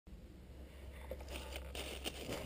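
Rustling and scuffing as a person moves among dry fallen leaves and logs, getting louder from about a second in.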